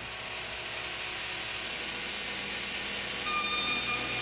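A steady rushing, hiss-like sound on the soundtrack, with high sustained violin notes coming in about three seconds in.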